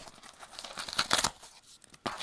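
Tear strip of a corrugated cardboard record mailer being pulled open by hand, the board ripping along its perforations in a string of short, irregular rips, loudest about a second in.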